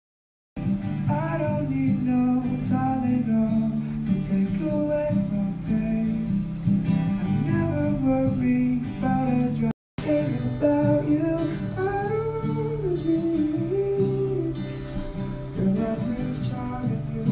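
A man singing live while playing an acoustic guitar. The sound is silent for about the first half second, and it cuts out completely once, briefly, about ten seconds in.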